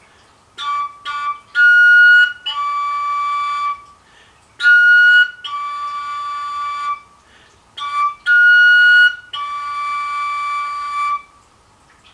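Koncovka, a Slovak overtone flute without finger holes, tuned in D, playing the same short improvised phrase three times in a row. Each phrase has a few short tongued notes, a higher held note, then a long lower note, with the pitch set by breath strength. It is a practice exercise in repeating a phrase cleanly.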